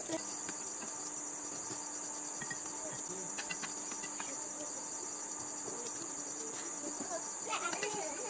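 Crickets chirping at night in an unbroken high-pitched trill, with a few light clinks of a spoon against a metal bowl.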